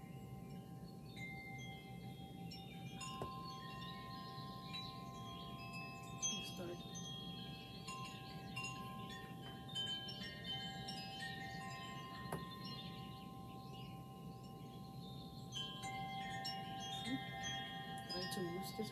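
Soft ringing chimes: clear, long-held tones at several pitches that start one after another and overlap. A few faint clicks are heard now and then.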